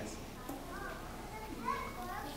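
A child's voice speaking faintly from across a large hall, over the low murmur and rustle of a crowd of seated schoolchildren.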